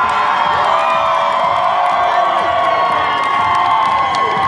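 A large crowd cheering and yelling, many voices at once, loud and unbroken throughout.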